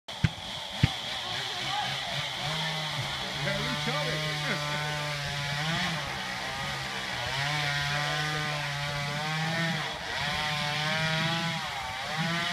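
Chainsaw running through a cut in a palm trunk, its engine pitch rising and falling as it bogs and revs. There are two sharp clicks near the start.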